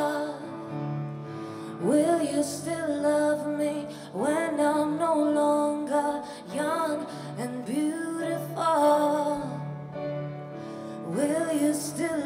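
A woman singing a slow, tender song over sustained accompaniment, each phrase sliding up into its first note about every two seconds.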